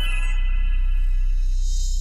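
Electronic outro music for a logo sting: a sustained synth chord over a steady deep bass drone, with a bright high shimmer swelling near the end.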